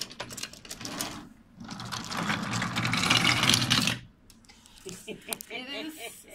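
Battery-powered wooden toy train engine running with a whirring motor, its wheels rattling over the wooden track. The sound swells about a second and a half in, is loudest for a couple of seconds, and stops abruptly about four seconds in.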